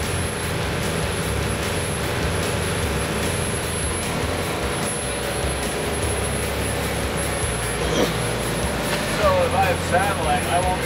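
Steady drone of a boat's 315-horsepower Yanmar inboard diesel running at cruising speed, mixed with the rush of wind and wake water.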